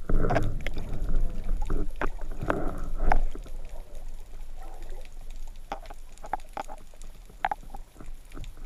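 Underwater sound picked up through a camera housing during a breath-hold spearfishing dive: water churning and rushing against the housing, loudest in the first three seconds, with scattered sharp clicks and knocks.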